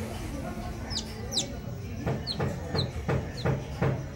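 Newborn chick peeping: short, high, falling peeps, two close together about a second in, then single shorter peeps every half second or so. A run of soft knocks comes in the second half.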